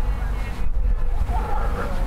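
Wind buffeting the microphone on an open grass airfield: a loud, uneven low rumble.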